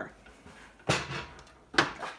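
Two short knocks about a second apart, the second one sharper, with quiet between.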